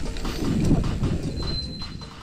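Mountain bike rolling over a dirt trail: a rough rumble of tyres and rattling bike with wind on the camera mic. A short, high squeal, typical of disc brakes, comes in a little past the middle. The sound fades out near the end.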